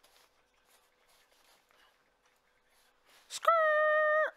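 A UK drill vocal ad-lib played back on its own, with EQ and compression applied. Near the end comes one high, steady held vocal note lasting just under a second. Before it there is only faint low-level sound.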